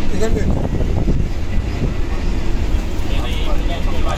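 Steady low rumble of a moving passenger train, heard from inside the coach.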